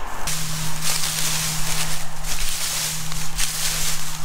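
Dry, chopped corn stalks and husks crunching and rustling underfoot, with a steady low hum from the combine running close by.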